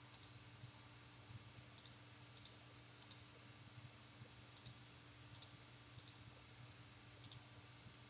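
Computer mouse clicking, about eight faint single clicks spaced irregularly, roughly one a second, as checkboxes are ticked one at a time.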